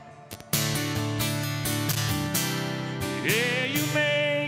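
Two acoustic guitars strumming chords of a slow country ballad, quieter for the first half second before the strumming picks up again. A man's singing voice comes back in near the end.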